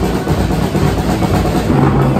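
Two acoustic drum kits playing along with a pop song's backing track, the drumming blurring into a continuous wash of drums and cymbals over a steady bass line.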